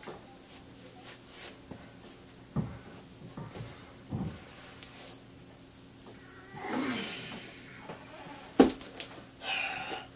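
A person's hands and feet shifting and tapping on the floor during a crane-to-handstand attempt, with a short strained breath about seven seconds in. A single loud thump near the end as the feet come back down to the floor.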